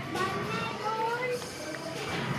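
Background of an indoor play area: faint children's voices with music playing.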